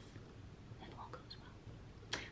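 Very quiet: a faint whisper from a woman, with little else above room tone.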